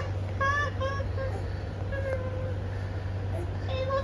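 A baby making short, high-pitched squeals and coos, several in a row, over a steady low hum.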